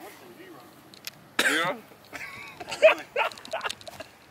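Men's voices: a sudden short, loud cry about a second and a half in, then indistinct talking and laughter.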